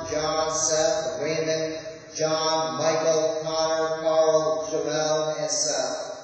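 A voice chanting liturgy on held, near-level pitches that step from note to note, with a short break for breath about two seconds in.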